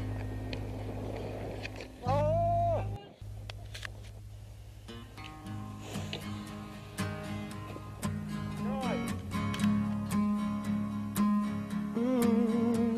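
Soundtrack music: a song with a sung voice and sustained chords that breaks off about three seconds in, followed by a plucked-guitar passage with singing.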